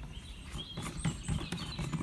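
Plastic clicks and knocks from the spout of a portable cassette-toilet tank being swivelled out by hand, with birds chirping in the background.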